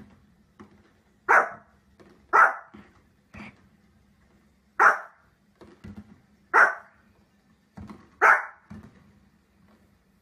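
Small fluffy dog, a Pomeranian, barking five times in sharp, short barks spaced one to two seconds apart, with softer little barks in between.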